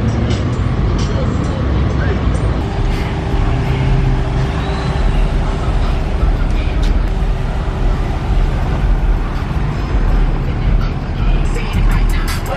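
Busy car-meet background: a steady low rumble of vehicles mixed with indistinct voices.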